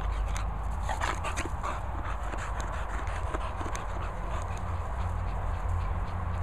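A dog's short vocal sounds close to the microphone, clustered about a second in, over a steady low rumble.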